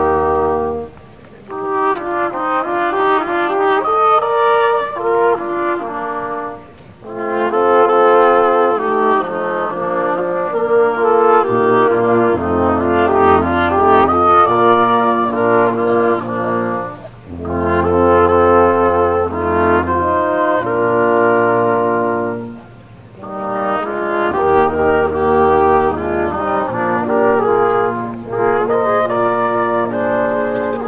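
Small brass ensemble playing Austrian folk music: horns carrying the melody in harmony over a tuba bass line. The music comes in phrases of about five seconds, each ending in a brief pause.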